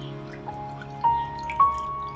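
Calm background music: a sustained low drone under single bell-like notes that strike one after another, three of them about half a second apart, the last the loudest.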